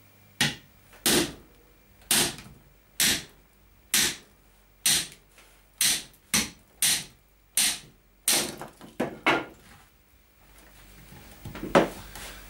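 A hammer striking a homemade wedge cut from a leaf spring, driving it into the end of a log on a chopping block to split it along the grain: about fourteen sharp metal-on-wood blows, roughly one a second, coming faster near the end of the series before stopping. One heavier knock follows near the end.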